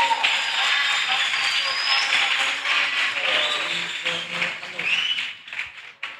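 Audience applause mixed with voices and cheers, dying away near the end.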